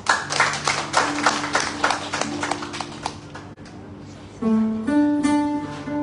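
Acoustic guitar strummed in quick, even strokes, then a woman's long sung notes come in over the guitar about four and a half seconds in.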